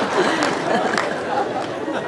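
Audience laughter dying away into murmuring chatter from the crowd.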